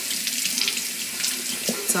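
Kitchen tap running into the sink, a steady hiss of water.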